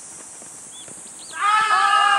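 A person's loud, high-pitched shout, starting about one and a half seconds in and held to the end.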